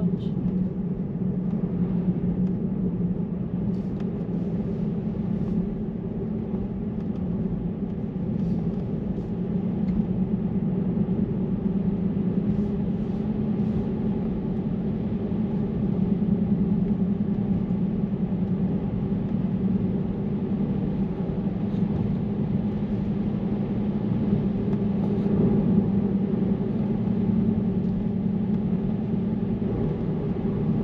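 Steady road and tyre noise inside a moving car's cabin, a constant low drone.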